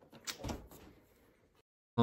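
A few faint knocks and rubbing of something handled right against the microphone, fading out within the first second, then dead silence.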